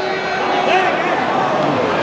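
Football stadium crowd noise: a steady din of many voices from a packed stand, with a few single shouts rising above it.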